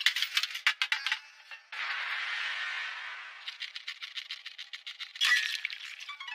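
Cartoon sound effects in thin, tinny audio with no bass. A quick run of rattling clicks is followed by a hiss lasting about two seconds, then fast ticking with a louder burst near the end.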